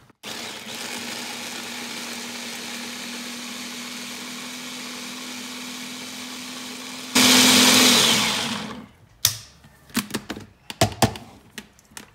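Electric hand blender's motor on its chopper bowl, blending sliced fresh ginger with water: it runs steadily with a steady hum, turns much louder for about a second around seven seconds in, then winds down. Several plastic clicks and knocks follow as the chopper is taken apart.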